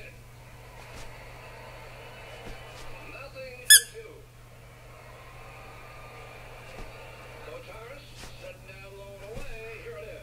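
A single short, loud, high-pitched squeak a little under four seconds in, over faint background voices and a steady low hum.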